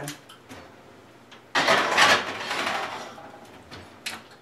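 A wall oven being loaded: a few light clicks, then about a second and a half in a sudden loud sliding, scraping rush of the oven door and rack that fades out over about two seconds.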